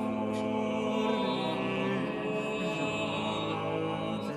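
Vocal quartet (soprano and three men) singing Renaissance polyphony in long, held lines that move in steps, with the reverberation of a large church.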